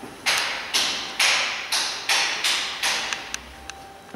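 Footsteps on a ceramic tile floor, about seven steps at roughly two per second that stop about three seconds in, each ringing on briefly in the bare, empty room.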